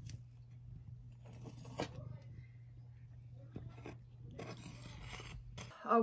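A cat crunching dry kibble in irregular bursts of short crunches, over a steady low hum.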